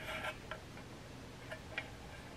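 A few faint light clicks from the slow cooker's metal insert pot being handled.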